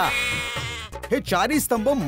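A comic bleat-like sound effect: one wavering call just under a second long. A man's speech follows.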